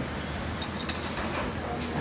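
Café background: a low murmur of voices with a few faint light clicks.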